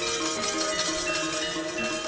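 Javanese gamelan ensemble playing, its metallophones ringing with a steady run of sustained notes.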